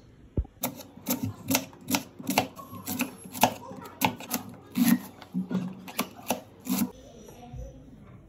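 Knife chopping a red onion on a plastic cutting board: sharp, regular knocks of the blade on the board, about three a second, stopping about a second before the end.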